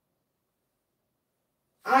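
Dead silence, then a woman's voice starts speaking just before the end.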